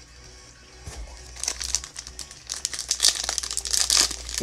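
Foil trading-card pack crinkling as it is handled and torn open, starting about a second and a half in and growing denser toward the end, over faint background music.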